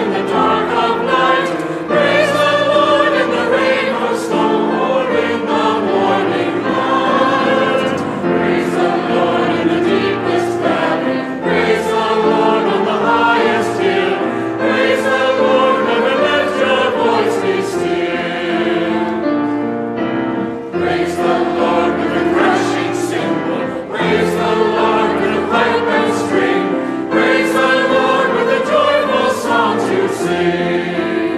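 Church congregation singing a praise hymn together, line after line, with a brief break about two-thirds of the way through.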